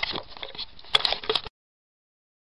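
Rustling and knocks from the phone camera being handled right at its microphone, with a quick run of sharp clicks about a second in. The sound then cuts off abruptly to dead silence.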